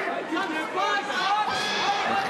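Speech only: overlapping men's voices, the commentary running on with chatter from the arena behind it.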